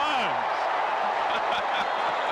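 Stadium crowd cheering and applauding a home run, a steady wash of noise, with the end of the announcer's call fading out in the first half-second.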